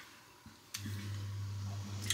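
Near silence, then a click about three-quarters of a second in, after which a steady low electrical hum runs on.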